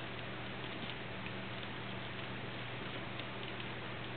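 Steady low hum and hiss in the background, with a few faint light ticks about a second in and again past three seconds as a small cast-resin piece is picked up off a plastic mat and handled.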